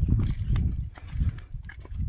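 Footsteps on a stony hillside path, a few irregular scuffs and knocks, under gusty low rumble of wind buffeting the microphone.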